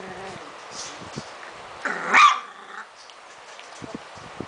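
3½-week-old puppies play-fighting, with small growls and whines, and one loud, sharp yelp-bark about two seconds in.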